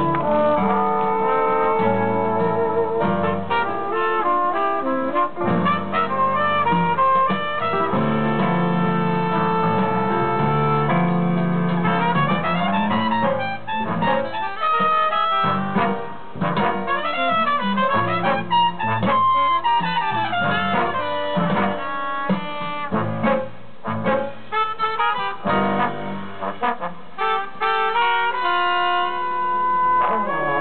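Live jazz band playing with a brass section of trombones and trumpets plus saxophone, over double bass and rhythm section; the horns sound sustained and shifting chords and lines without a break.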